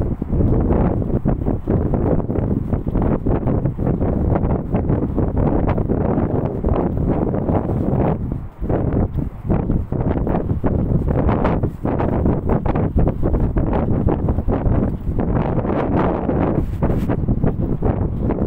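Wind buffeting a phone's microphone: a loud, gusty rumble that swells and dips throughout, with a brief lull about eight seconds in.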